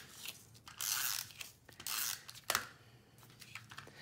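Hand-held adhesive tape runner rolled across the back of a card-stock panel: two short raspy strokes about a second apart, with a sharp click about two and a half seconds in.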